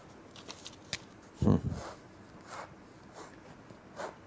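Pens scratching and tapping faintly on paper as picks are written down, with a brief murmur of voice about a second and a half in.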